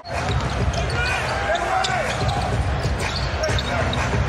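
A basketball being dribbled on the hardwood court, heard over the steady noise of the arena crowd.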